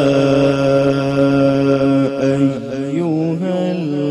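A man reciting Quranic verses in a melodic chant (tilawat), holding one long drawn-out note, then turning through wavering pitch ornaments about halfway through.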